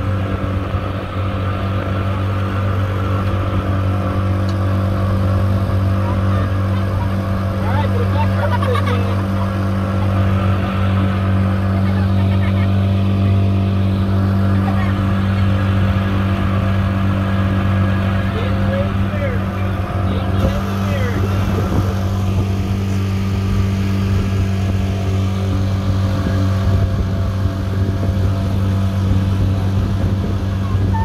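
Pontoon boat's outboard motor running steadily under way at a constant low pitch.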